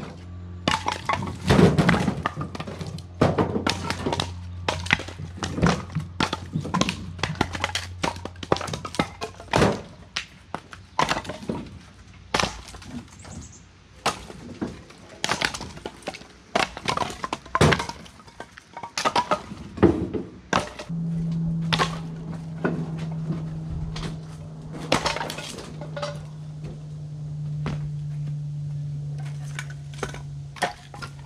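Split firewood being thrown by hand out of a pickup truck bed onto a pile on a concrete driveway: a long run of hollow wooden clunks and clatters, coming quickly and irregularly as the logs land on the concrete and on each other.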